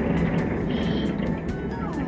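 Fireworks going off in quick succession: many sharp pops and crackles over a continuous low rumble.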